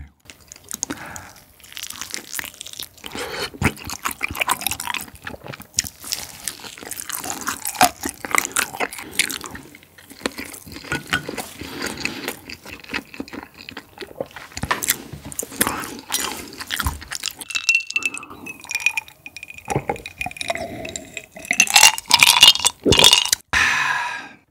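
Close-miked chewing of sauce-coated Korean fried chicken (yangnyeom chicken): many small wet, crunchy bites and crackles. Near the end there is a drink from a glass, with a clink.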